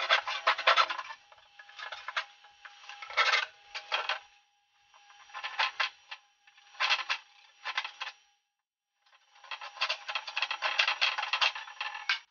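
A hand tool scraping and cutting plywood in bursts of quick strokes, with short pauses between the bursts. The longest run of strokes comes near the end.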